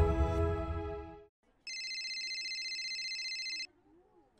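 The tail of a music jingle fades out in the first second. After a brief silence, a mobile phone ringtone plays a steady, high, rapidly pulsing electronic trill for about two seconds, then stops.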